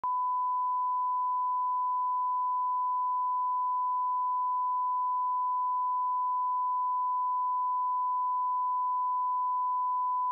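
Continuous, unwavering 1 kHz sine-wave test tone: the line-up reference tone that accompanies colour bars, used for setting audio levels.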